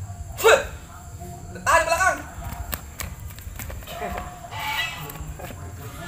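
Short vocal outbursts from a person: a loud, sharp yelp that drops in pitch about half a second in, then further voiced cries around two seconds and again near five seconds.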